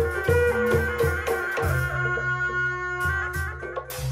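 Live traditional Sundanese music for a kuda lumping dance: drum strokes and ringing gong notes, with a long held note about halfway through.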